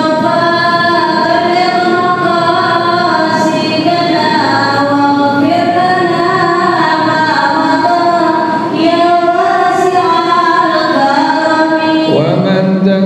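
A man chanting an unaccompanied Islamic devotional song into a handheld microphone, with long held notes that waver and glide melismatically from one pitch to the next.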